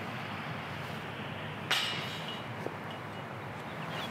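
Steady outdoor background noise, with one short, sharp sound about a second and a half in.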